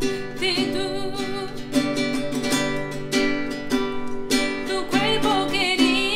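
A woman singing a slow Spanish ballad to her own nylon-string classical guitar accompaniment, holding long notes with vibrato over sustained guitar chords.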